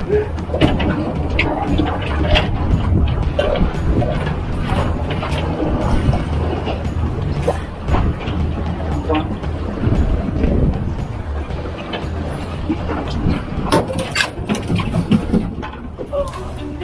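Wind and water noise on a small boat at sea, over a low steady hum, with scattered knocks and clicks throughout.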